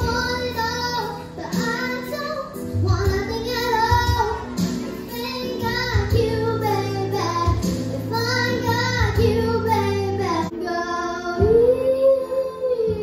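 A young girl singing a pop song through a handheld microphone and PA speaker, over instrumental accompaniment with steady low bass notes.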